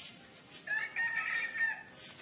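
A rooster crowing once, a single held call of about a second that starts a little over half a second in.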